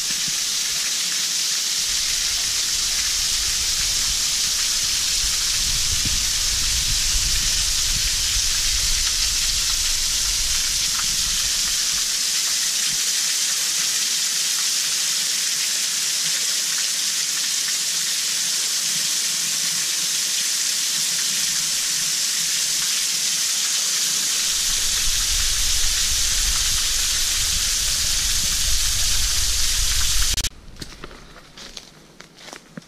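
Water of the Duwili Ella waterfall pouring and spraying past a rock overhang: a loud, steady hiss of falling water and drops striking rock. A low rumble comes and goes beneath it, dropping away in the middle.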